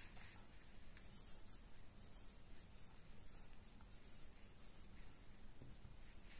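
Pen writing a word by hand on a workbook page: faint, uneven scratching strokes of the pen tip on paper.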